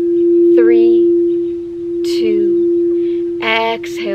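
Singing bowl sounding one steady, unbroken low tone, kept going by the mallet.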